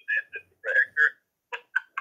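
A person laughing in short, high-pitched bursts that come faster in the second half, about four a second.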